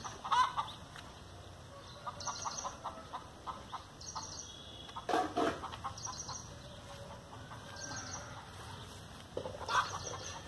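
Chickens clucking in short runs, with louder calls about half a second in, around five seconds in and near the end.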